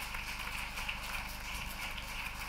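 Large audience applauding: a steady patter of many hands clapping, with laughter in it, reverberating in a big hall.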